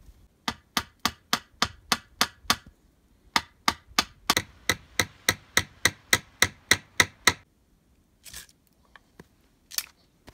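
A blade chopping into a small tree trunk in quick, even strokes, about three a second. There are two runs: a short one, then after a brief pause a longer one of about a dozen strokes that stops suddenly.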